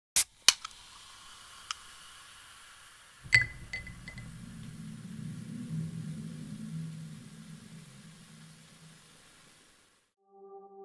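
Logo sound sting: a few sharp clicks over a faint hiss, then a sharp hit about three seconds in with a brief high ring, followed by a low hum that swells and slowly fades away.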